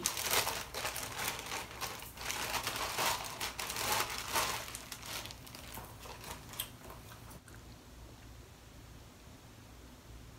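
A clear plastic shopping bag crinkling and rustling as a pair of foam clogs is pulled out of it. The rustling is dense for about the first five seconds, then thins to a few faint crackles and stops before the end.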